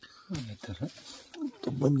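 A man's voice: a few short vocal sounds falling in pitch, then a loud, long drawn-out call beginning near the end.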